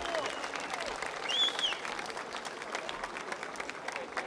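Large concert audience applauding just as the song's last notes stop, the dense clapping easing off slightly. A single brief high call rises over the clapping about a second and a half in.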